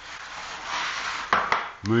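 A Festool plunge saw and its aluminium guide rail being handled on the bench: a scraping slide of about a second, then two sharp knocks as the rail is lifted with the saw held against the end stop.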